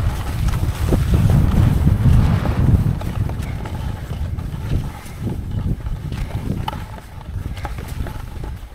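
Skis sliding and scraping over packed, tracked snow during a downhill run, with scattered clicks and clatters. Wind rumble on the camera's microphone is loudest for the first three seconds and then eases.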